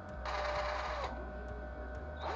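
Cordless drill running in one short burst of just under a second, boring into a small wooden lure body, its motor whine dropping as it spins down. The hole is drilled to seat lead shot as ballast in the lure.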